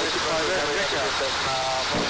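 Voices over the aircraft intercom, over the steady noise of the aircraft's engine and airflow filling the cockpit.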